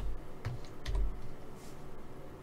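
A few quick clicks from a computer mouse and keyboard, in the first second or so, as chess moves are entered on an on-screen board.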